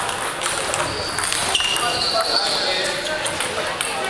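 Scattered clicks of table tennis balls bouncing on tables and paddles, with people talking.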